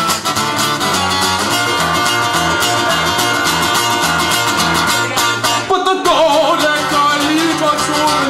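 Live band playing an instrumental passage between vocal lines: guitars over a stepping bass line. Everything drops out briefly about six seconds in, then the full band comes back.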